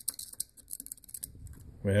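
Faint, irregular light clicks and scrapes of a small tool prodding hardened crud and corrosion inside an air brake regulator's port. The deposits are clogging the regulator.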